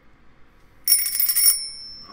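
A small bell rung with a quick run of strikes for about half a second, a little under a second in, then ringing out high and fading.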